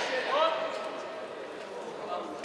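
A short shouted call about half a second in, ringing in a large hall, then the hall's steady background noise.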